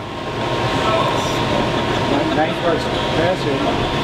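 Steady mechanical rumble and hiss from running machinery, with faint, scattered voices under it about a second in and again later.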